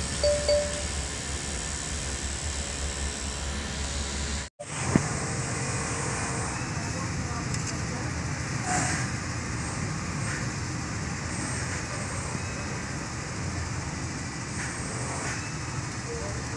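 Vehicle engine idling steadily, heard close to the engine bay after a brief cut-out in the sound about four and a half seconds in.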